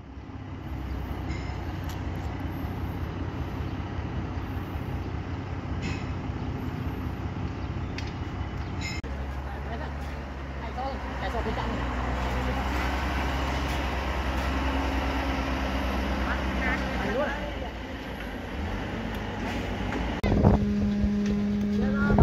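Wheel loader's diesel engine running steadily at a construction site, a low, even drone. Later the machinery hum carries on under faint distant voices, and a loud steady hum starts about twenty seconds in.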